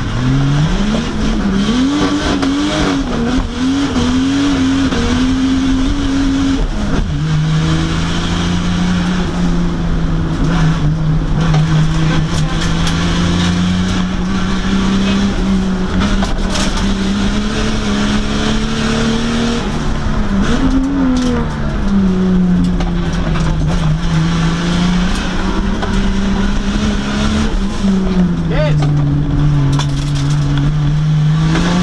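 Holden Commodore VL Turbo's turbocharged 3.0-litre straight-six under hard acceleration, heard inside the cabin. Revs climb and flare for the first several seconds, drop at a gear change about seven seconds in, then pull up slowly. They dip and swing again around twenty seconds in and near the end.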